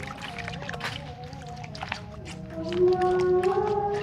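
A melody of long held notes that slide slowly up and down in pitch. Under it are brief splashes and clicks of water as hands scrub taro corms in a bucket.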